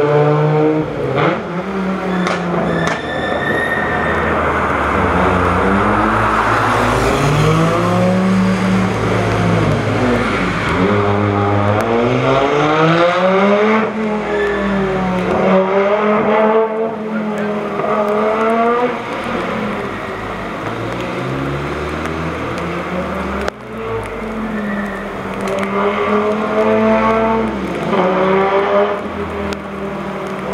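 Audi Sport Quattro S1's turbocharged five-cylinder rally engine revving hard through the gears, the note rising in repeated sweeps and dropping back at each shift or lift between bends.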